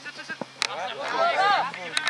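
A person's voice calling out loudly across a football pitch, drawn out with a rising-then-falling pitch, from about half a second in until near the end, with a few sharp knocks alongside.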